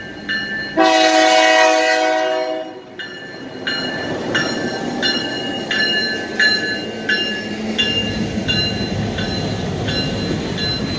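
A grade-crossing bell dings steadily, about three strokes every two seconds. About a second in, the lead diesel locomotive sounds one chord-horn blast of nearly two seconds, then the train rolls past with rising wheel and engine noise as the passenger coaches go by.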